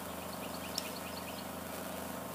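A golf club splashing the ball out of a greenside sand bunker, heard as one short, sharp strike a little under a second in. Over a steady outdoor hum, a quick run of small high bird chirps comes around the same moment.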